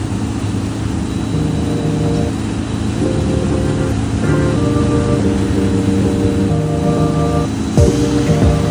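Background music of held chords that change every second or two, with a beat coming in near the end.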